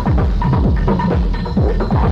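Techno with a steady kick drum about two beats a second over a constant deep bass, and bending acid synth lines above it.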